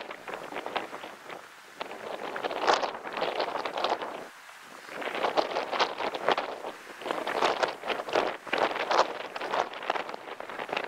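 Rustling and crackling of dry mesquite brush and grass, coming in waves with a short lull about four seconds in.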